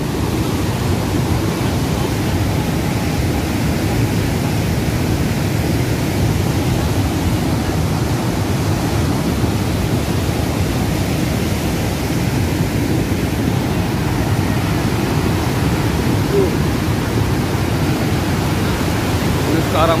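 Cold lahar: a mudflow of thick, muddy water carrying stones, rushing steadily down the river channel.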